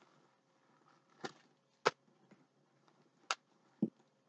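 Handling of a bag being emptied: three faint, sharp clicks and taps, a second or so apart, as small items come out of its front pocket.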